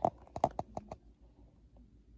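A quick run of about seven light, sharp clicks and taps within the first second, then quiet room tone.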